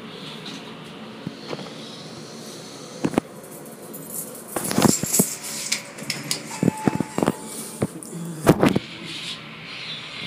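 Elevator car travelling, with a steady hum during the ride. From about halfway there are clicks and knocks and a brief steady tone, and the doors open near the end.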